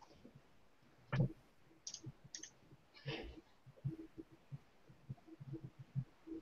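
Faint scattered clicks and taps of a computer mouse and keyboard, with one louder thump about a second in and a short rustle about three seconds in.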